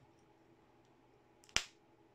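A single sharp snap about one and a half seconds in: a spring-loaded alligator test clip closing onto the drill's circuit board.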